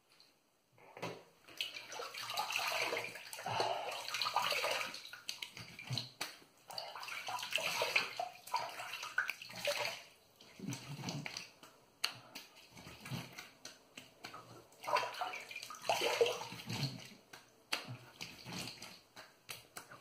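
Water running and splashing at a bathroom sink as shaving lather is rinsed off the face after a wet shave. The splashing comes in a long spell over the first half and a shorter one later, with a few sharp knocks and slaps in between.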